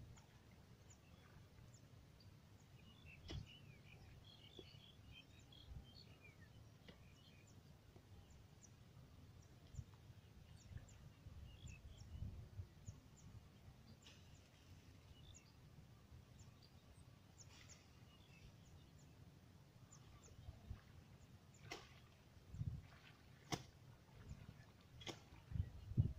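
Near silence: faint outdoor ambience with a low rumble, scattered faint bird chirps, and a few sharp clicks near the end.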